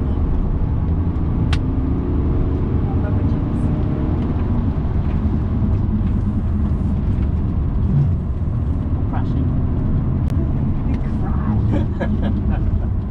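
Inside the cabin of a BMW 330d Touring on track: the 3.0-litre straight-six turbodiesel pulling hard, mixed with loud, steady road and tyre noise.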